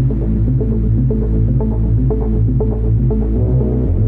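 Dark, low electronic music: a steady deep bass drone under sustained low tones, with short higher notes repeating over it and the bass note shifting near the end.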